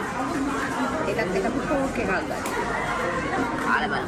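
Indistinct chatter of several people talking at once in a large room, steady throughout with no clear words.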